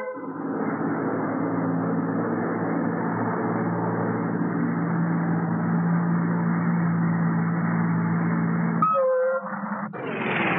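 Steady running noise heard from inside a crowded old bus or tram: a constant rumble with a low hum. A short pitched toot sounds near the end.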